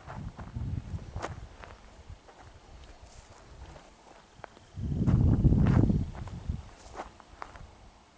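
Footsteps on a grass field track with rumbling handling noise on the camera microphone as the camera is turned. The rumble is loudest for about a second and a half around five seconds in, with scattered light clicks.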